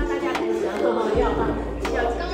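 Several voices talking at once over background music with a steady bass line.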